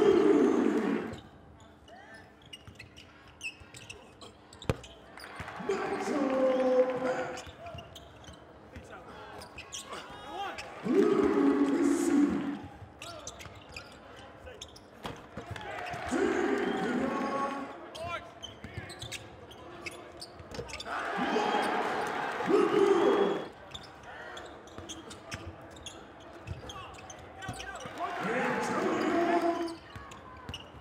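Basketball game sounds in a gym: a ball bouncing on the hardwood floor and sneakers squeaking. About every five seconds a burst of shouting and cheering from a few voices lasts a second or two as each play finishes.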